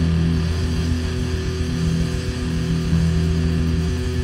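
A rock band playing live, with electric guitar and bass holding steady low notes.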